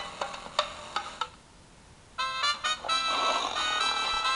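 A few sharp clicks, then after a short lull a phone's ringtone starts about halfway through: a run of bright electronic notes.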